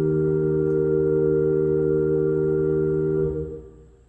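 Pipe organ holding a steady sustained chord, which is released a little over three seconds in and dies away in the room's echo.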